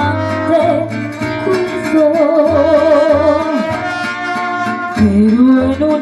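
A mariachi band playing live: a woman sings a melody with vibrato over strummed guitars, trumpets and steady plucked bass notes.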